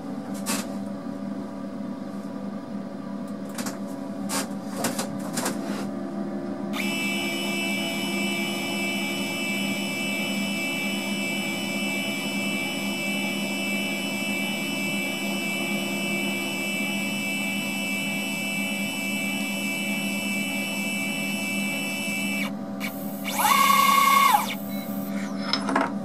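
CNC router's stepper motors whining steadily at one pitch as the Z axis feeds slowly down to probe the surface of the part, over a constant low machine hum; the whine stops when the tool touches. Soon after comes a brief, louder whine that rises, holds and falls in pitch: a quick axis move.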